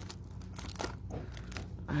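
Clear plastic shrink-wrap on a packaged journal crinkling in the hand, in a few short crackles.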